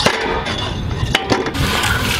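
A weight-loaded push sled shoved across tarmac: a few knocks as it gets going about a second in, then its base scraping steadily over the ground.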